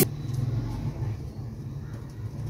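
Low, steady background rumble with faint noise above it.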